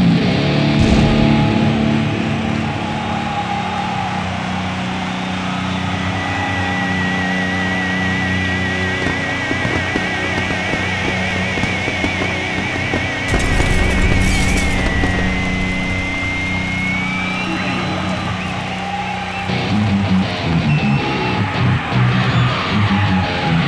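Electric guitar rock music: low notes are held under a high lead note with a wide vibrato, which slides upward before fast choppy low notes return near the end. A noisy burst sounds about halfway through.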